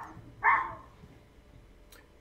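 One short animal call, a single sharp burst about half a second in that fades quickly, over faint background noise.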